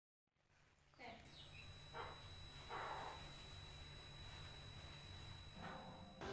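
Faint steady electrical hum with thin, high-pitched whining tones that starts about a second in after silence, with a few faint, indistinct voice-like sounds over it.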